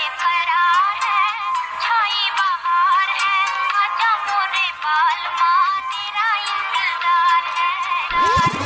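Bollywood remix intro: a high, thin melodic vocal line with gliding, wavering pitches and no bass beneath it.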